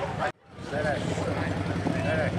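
Car engine idling with a steady low hum, under the chatter of people nearby. The sound cuts out to silence for a moment about a third of a second in.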